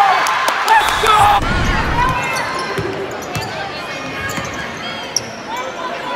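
Basketball game in a gym: spectators' voices and shouts, a basketball bouncing on the hardwood court, and sneakers squeaking. The voices are loudest in the first second and a half, followed by a run of low thuds.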